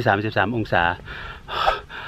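A man speaking Thai, followed near the end by a short, loud breathy exhalation.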